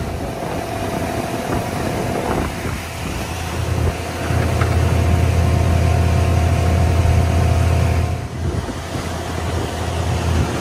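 Longtail boat engine running steadily under way, with water rushing past the hull; the engine grows louder about four seconds in and drops back near the end.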